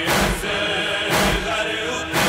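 Noha recitation: a chorus of voices chanting a lament, with a heavy beat struck about once a second.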